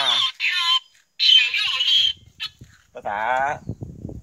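Electric tricycle's reverse-warning speaker playing a recorded voice announcement in a foreign language, repeated in two short phrases, thin and high-sounding with little low end: the signal that reverse is selected. A man speaks a word near the end.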